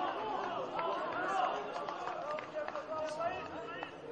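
Several men's voices shouting and calling out across the football pitch, overlapping one another, with a sharp knock about three seconds in.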